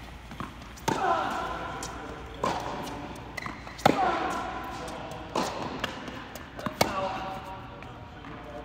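Tennis ball being hit back and forth with rackets on an indoor court: five sharp hits about a second and a half apart, each ringing on in the echo of the large hall, the loudest about halfway through.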